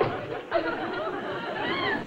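Indistinct, low murmured speech, with a brief sharp knock right at the start.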